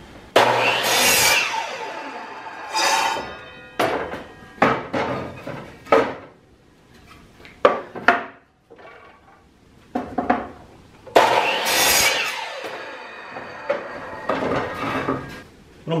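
Craftsman compound miter saw cutting pallet boards twice: a sudden burst as the motor starts and the blade goes through the wood, dying away over a second or two, once near the start and again about eleven seconds in. Short knocks of boards being handled and set on the saw table fall between the cuts.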